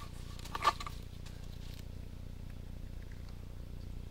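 Steady low hum with one short, sharp knock about two-thirds of a second in, as a sewer inspection camera on its push rod is pulled back out of the drain pipe.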